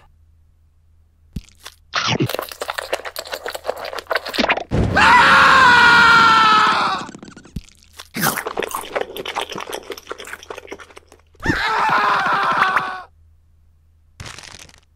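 Crunchy biting and chewing sounds of crisp fried chicken being eaten, in two bursts of crackle. Between them a loud, drawn-out cartoon character voice sound, and a shorter one near the end.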